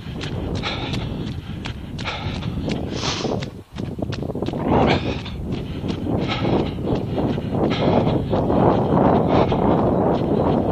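A runner's own footfalls on a wet path, heard from a camera worn by the runner, in a steady rhythm of about three steps a second. From about five seconds in, a rushing noise under the steps grows louder.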